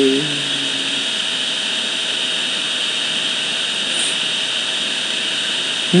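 Steady hiss of background noise, strongest in the upper range. The tail of a sung male note ends just after the start.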